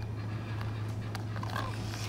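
Steady low hum of store background, with a few faint clicks and crinkles as the plastic foot-mask packets on the shelf are handled.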